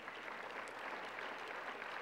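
Audience applauding, faint and steady, growing slightly louder toward the end.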